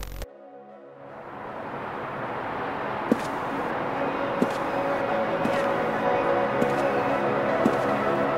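Background music with a brief loud hit at the start, then swelling in from about a second in. From about three seconds on, a sharp click lands about once a second.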